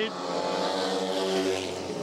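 Speedway motorcycles racing, their 500 cc single-cylinder methanol engines giving a steady engine note.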